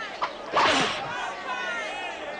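A whip lashing, one loud stroke about half a second in, just after a small sharp click.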